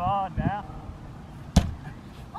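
A brief call from a voice, then about a second and a half in a single sharp smack as a thrown baseball strikes a pitch-back rebounder net close by.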